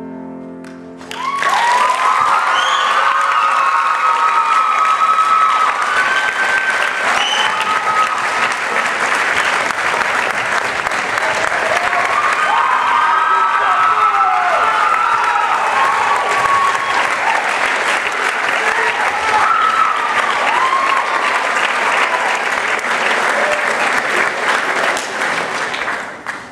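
The last chord of a grand piano rings for about a second, then an audience breaks into loud applause mixed with cheering and whoops, which tails off near the end.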